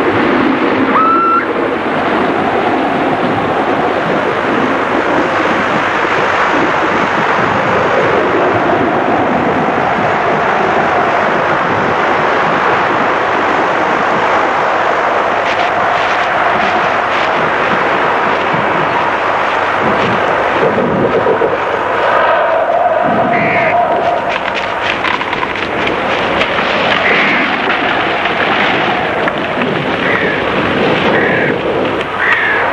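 Steady rushing of wind through forest trees, loud and unbroken, with a few short, faint high calls that rise above it now and then.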